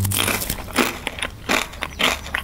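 Crunchy oatmeal cookie being bitten and chewed: a quick series of irregular loud crunches.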